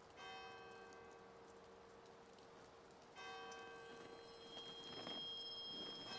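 Soft soundtrack music: a bell struck twice, about three seconds apart, each stroke ringing out over a held note, with faint high twinkling chimes joining in the second half.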